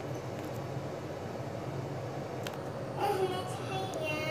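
Steady low background hum with no knife chopping heard, and a faint voice near the end.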